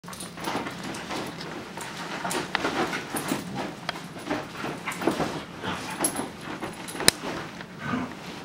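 A wiry black-and-tan terrier moving about close by on a bed, with irregular short breathy dog noises and rustling of the bedding. A sharp click about seven seconds in.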